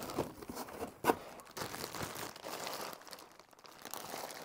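Clear plastic bag crinkling as it is handled and pulled up out of a cardboard box, with irregular sharp crackles, the loudest about a second in.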